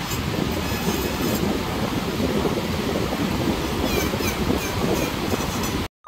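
Flexible-shaft rotary carving tool running, its small bit grinding into wood, making a steady, dense noise that cuts off suddenly near the end.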